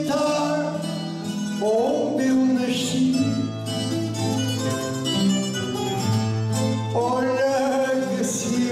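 A man singing a verse of a Portuguese cantoria ao desafio, with his voice sliding between held notes, over strummed and plucked guitar accompaniment.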